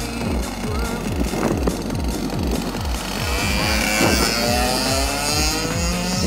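Background music with a steady beat over a 125cc two-stroke kart engine, whose pitch rises in the second half as the kart accelerates away.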